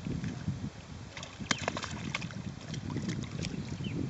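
Caimans splashing and thrashing in shallow water at the bank, with a burst of sharp splashes about a second in and a few more later. Wind rumbles on the microphone underneath.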